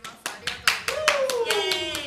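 Hands clapping quickly and repeatedly, about five claps a second, with a voice crying out in a long falling tone about a second in.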